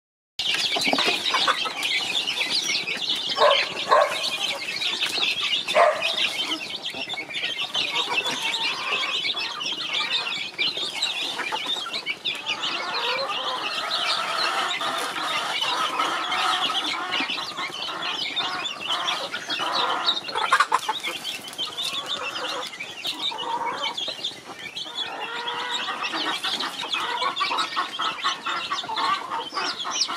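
A flock of young chickens (chicks) peeping nonstop in a dense, high-pitched chorus as they crowd around their feed, with a few louder calls among them in the first few seconds.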